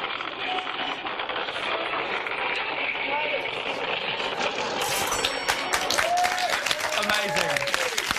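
Noisy street-video audio with voices, then from about five seconds in, clapping and laughter.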